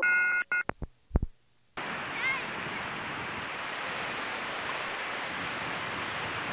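A telephone off-hook warning tone sounds briefly, followed by a few sharp clicks. At just under two seconds in, the sound switches abruptly to a steady wash of ocean surf and wind.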